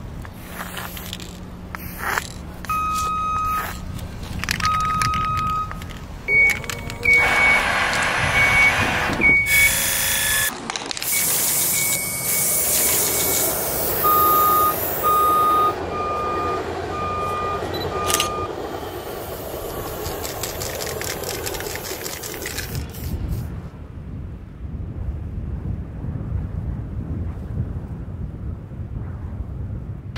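Repeated steady beeps of a vehicle's reversing alarm, sounding in short runs, over a low engine rumble, with loud bursts of hissing noise in the middle.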